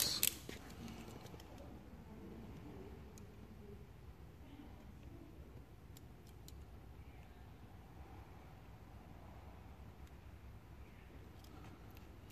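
Faint low room hum with a few soft, sharp clicks spread through it: light handling noise from a knife trimming excess vinyl wrap film along a car's door trim.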